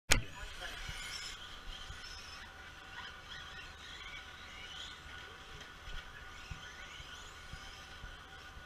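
Radio-controlled cars running on a dirt track at some distance, several high motor whines rising and falling as they speed up and slow down, with a few soft low thumps. A sharp click right at the start.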